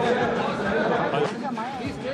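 Many people talking at once in a large hall: a steady murmur of overlapping voices.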